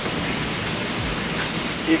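Steady rushing water noise of a reef aquarium's circulation, with its return pump and powerhead running.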